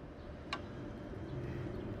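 Faint outdoor background noise that slowly grows louder, with a single sharp click about half a second in.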